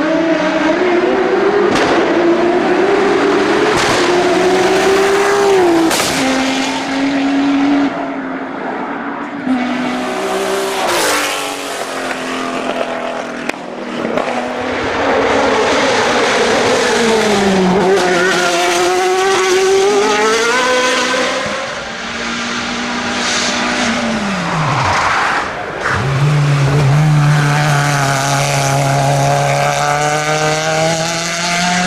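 Hillclimb race cars going up the course one after another, engines revving hard with the pitch climbing and dropping at each gear change. A few sharp cracks in the first half.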